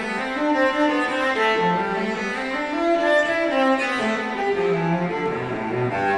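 Solo cello made by Gio Batta Morassi in Cremona in 2005, played with the bow. It plays a melodic line of changing notes that rises and falls.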